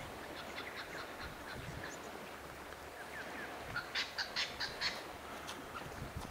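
Birds calling: scattered short high chirps, then a quick run of about six louder calls around four to five seconds in, over a faint steady hiss.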